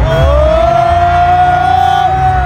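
Live hip-hop concert music through a festival sound system: a heavy bass beat under one long high note that slides up at the start and is then held steady.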